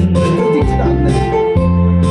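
Trot karaoke backing track playing an instrumental passage: guitar over a bass line that changes note about once a second, with no voice on top.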